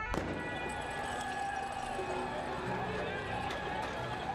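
Street clash between protesters and riot police: shouting voices and running feet in a noisy crowd, with a couple of sharp bangs in the last second.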